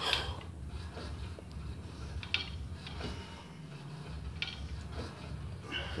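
Cable machine in use: a few faint, scattered clicks and clinks over a low, steady hum of room noise.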